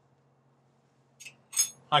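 Two short, light metallic clinks, high and ringing, come about a second and a half in, with a faint steady hum underneath.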